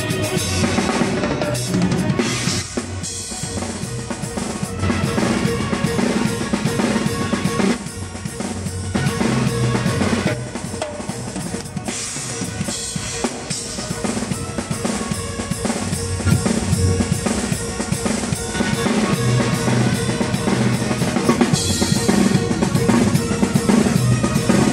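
Drum kit played live in a steady, driving rhythm: bass drum, snare, toms and cymbals, close-miked and loud, with the rest of the band beneath.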